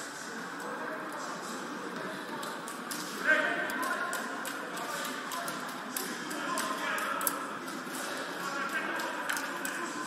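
Indistinct voices talking in a large sports hall, with scattered light clicks and a sharp knock about three seconds in.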